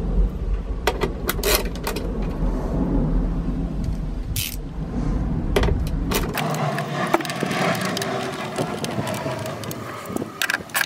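Wiring harness and plastic connectors being handled at a truck's door pillar: rustling with a string of sharp clicks and light rattles. A low rumble underneath stops about six seconds in.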